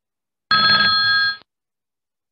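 Trading platform's alert chime: a single electronic tone of about a second, several steady pitches sounding together, then stopping abruptly. It marks a new alert in the platform.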